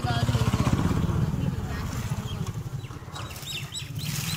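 A motor vehicle's engine running close by with a pulsing low rumble, loudest in the first second or two and then fading as it moves off.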